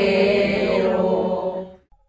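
A group of people singing a traditional Mexican posada song together in sustained, chant-like unison. The singing fades out near the end.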